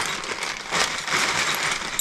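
A bag rustling and crinkling as it is handled: a continuous crackly rustle with many small clicks.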